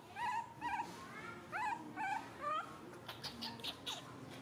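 Baby monkey squealing in a string of short, high-pitched whimpering squeaks, some gliding upward, as a hungry infant begs for its milk bottle. A quick run of clicks comes near the end.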